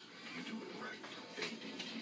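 Faint, indistinct voices over low room noise.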